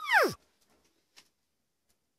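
A short comic sound effect: one quick tone that slides steeply down in pitch and is over within about a third of a second. After it there is near silence.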